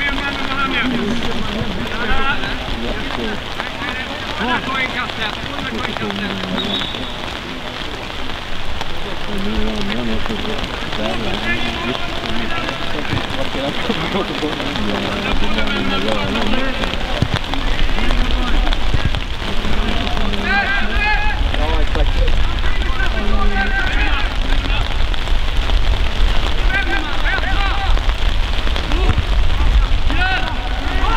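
Distant shouts and calls of players across a football pitch over a steady hiss. A low rumble on the microphone comes in a little past halfway.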